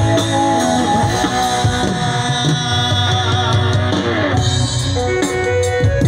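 Live rock band playing loudly through a large PA system: drum kit, bass guitar and electric guitar, with a singer on the microphone.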